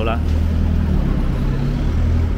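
A nearby motor vehicle's engine running with a steady low hum, amid street traffic noise.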